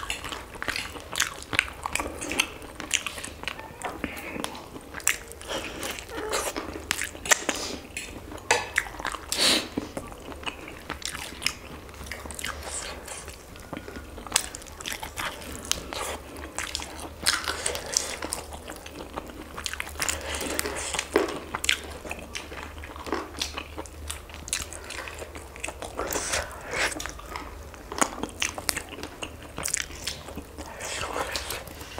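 Close-miked eating of fried chicken wings: biting and chewing, with a dense, irregular run of crunches and wet mouth clicks.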